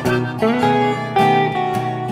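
Blues song with guitar playing between sung lines, with a harmonica played live along with it, holding long notes.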